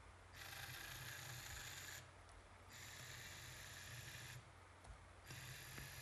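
Small electric motor and gears of a LEGO WeDo 2.0 robot car whirring faintly in three runs of a second or two each, with short pauses between, as the car is driven and turned.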